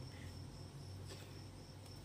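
Faint, steady high-pitched cricket trill over a low steady hum, with a soft paper rustle about a second in.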